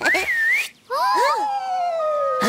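Whistled cartoon sound effects: a short wavering whistle, then, after a brief pause, a slow falling whistle with several shorter sliding whistles over it.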